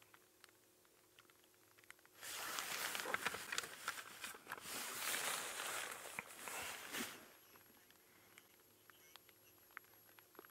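A close rustling, crackling noise with many small clicks, starting about two seconds in and stopping about five seconds later.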